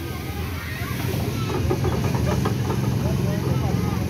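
Spinning teacup ride's drive machinery running with a steady low hum, under faint voices of the riders.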